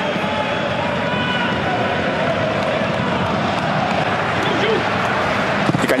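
Football match broadcast ambience: a steady wash of stadium noise with a few faint, distant shouts.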